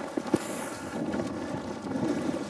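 Wind buffeting the microphone in a steady rush, with one sharp knock about a third of a second in as supplies are handled.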